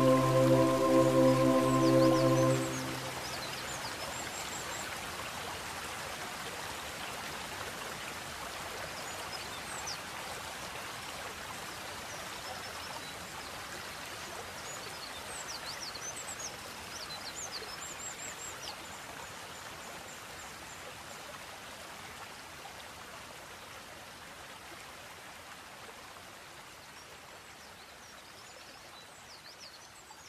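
A held chord of new-age relaxation music ends about two and a half seconds in. It leaves the steady rush of a flowing creek with a few faint high bird chirps, slowly fading out.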